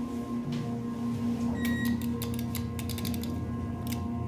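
Steady hum inside a freight elevator car, with a quick run of sharp clicks and rattles in the middle and one more click near the end.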